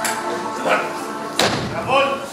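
Background music with a sharp, loud thud about one and a half seconds in, and short calls of a voice before it and near the end.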